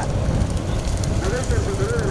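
A man's raised voice, from a little over a second in, over a constant low rumbling, crackling noise.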